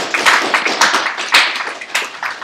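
A room of students applauding, many hands clapping at once in a dense, uneven patter.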